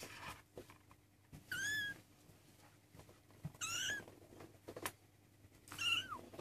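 A 23-day-old Maine coon kitten mewing: three short, high-pitched mews about two seconds apart, the last one dropping in pitch at its end. Faint small clicks and rustles come between the mews.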